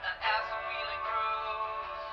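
Music with a singing voice, thin-sounding, with no bass and no top end.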